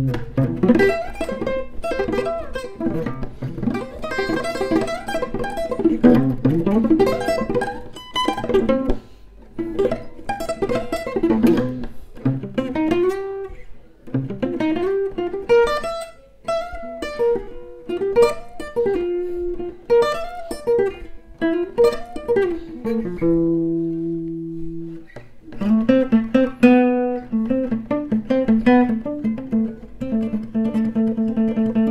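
Steel-string acoustic guitar played fingerstyle: quick runs of plucked notes and chords, with one chord left ringing for about two seconds near the end before the picking resumes. The guitar is a cheap, long-unplayed one with old, rusty strings and very high action.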